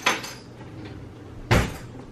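Kitchen handling knocks: one right at the start, then a louder, heavier thud about a second and a half in, as of a cabinet door or drawer shutting.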